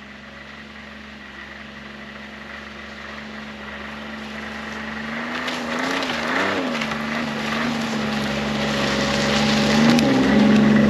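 Ski-Doo Expedition 900 SE snowmobile's four-stroke three-cylinder engine approaching at low, feathered throttle, growing steadily louder. About six seconds in, the engine revs up and down twice, and track and snow noise builds as it draws close.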